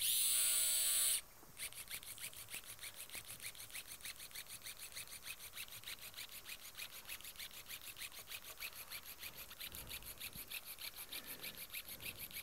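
Arthroscopic powered shaver with a bone-cutter blade, set to oscillate, running as it cuts articular cartilage, with a rapid, even pulsing of several beats a second. Its suction draws the fragments into an in-line GraftNet collector. It opens with a louder whining hiss lasting about a second.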